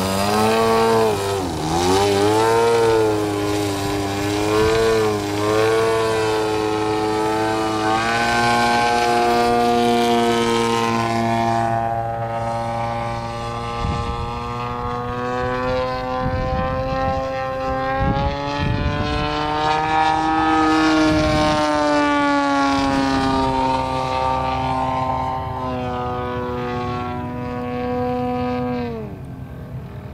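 Large radio-controlled Yak-55 aerobatic model plane's engine and propeller, loud, the pitch wavering up and down with the throttle while the plane hangs nose-up close to the ground. It then runs steadier as the plane climbs away, the pitch rising around the middle and falling near the end, where it gets quieter.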